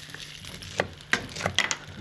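Chef's knife cutting an onion on a wooden chopping board, about five sharp strikes in the second half, over the low sizzle of potatoes frying in a pan.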